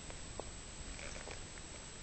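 A domestic cat grooming herself: faint, soft licking clicks, scattered and irregular.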